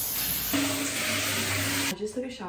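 Shower head spraying water into a tiled shower, a steady hiss that cuts off suddenly near the end, with background music underneath.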